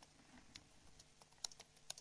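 A few faint, scattered clicks of computer keyboard keys being typed, in near silence.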